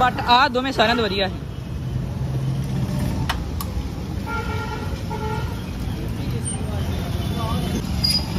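Steady running noise of a motor scooter on the road, with a vehicle horn sounding briefly about four and a half seconds in.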